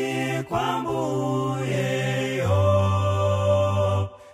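Male gospel vocal group singing in close harmony. A brief break about half a second in, then a long held chord over a deep bass voice in the second half, cut off at the end.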